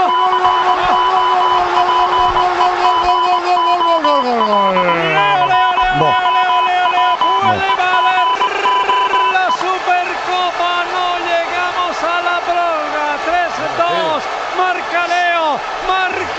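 Radio football commentator's goal call: one long 'gooool' held on a single note for about four seconds, then sliding down in pitch, over a pulsing high tone. It is followed by excited shouting and singing over music.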